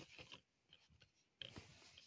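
Faint rubbing and scraping of a plastic DVD keep case being handled and opened, in two short patches: one at the start and one from about a second and a half in.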